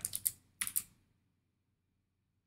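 A few quick key clicks on a computer keyboard, in two short groups within the first second, then stillness.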